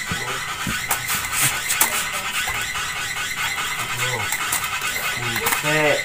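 Durians knocking as they are set into a woven bamboo basket, a few sharp knocks in the first two seconds, over a steady high-pitched hiss, with brief voices.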